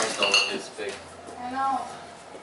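Tubular metal exercise frame clanking as it is moved and set down, with a short metallic ring right at the start.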